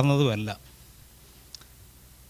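A man speaking into a handheld microphone, his voice stopping about half a second in. Then a pause of low room tone with one faint click about a second and a half in.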